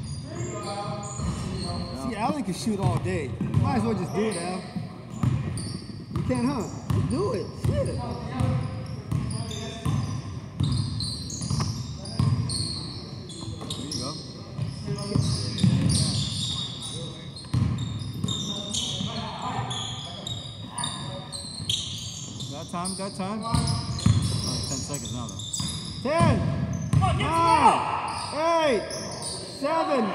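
Pickup basketball game on a hardwood gym court: the ball bouncing on the floor, sneakers squeaking, and players' voices calling out, all echoing in a large hall. A run of high squeaks comes near the end.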